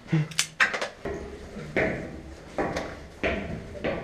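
Footsteps on a debris-strewn floor and stairs: a string of separate scuffs and knocks, one roughly every three-quarters of a second, with small clattering bits underfoot.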